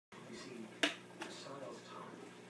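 A sharp click a little under a second in and a softer one shortly after, over faint low talk and quiet room tone.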